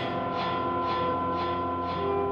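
Live experimental ensemble of trumpet, saxophone, electronics and two electric guitars: sustained, droning held tones layered over guitar notes struck about twice a second.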